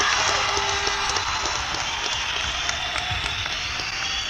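Live concert audience applauding and cheering as a song ends, with the last held notes of the music fading under the clapping in the first second or so.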